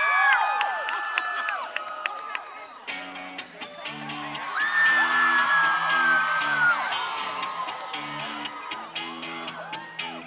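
Audience whooping and screaming, then about three seconds in a live band starts a song with a repeating riff of short, choppy notes while the crowd keeps cheering over it.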